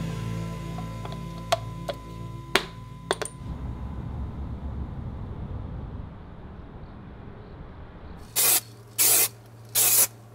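A few sharp clicks in the first few seconds as a plastic wheel centre cap is pressed into a Land Rover Discovery 3 alloy wheel, over background music. Near the end come four short, loud hissing bursts.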